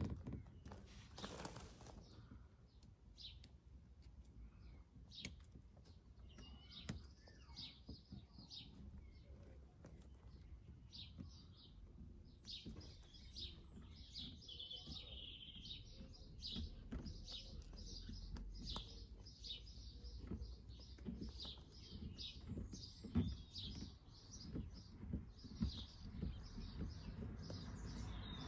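Birds chirping: a few short high chirps at first, becoming a rapid, busy run of chirps through the second half. Faint scattered clicks and a low background rumble sit underneath.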